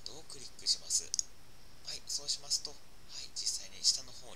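A few short, sharp computer mouse clicks over faint, low murmuring speech.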